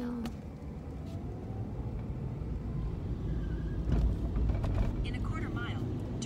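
Car engine and road noise heard from inside the cabin, a low rumble that grows louder from about the middle, with a short knock about four seconds in.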